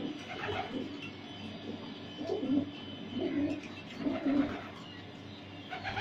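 Racing pigeons in a loft cooing, several birds calling in overlapping bouts, with the loudest coos about two and a half and four and a half seconds in.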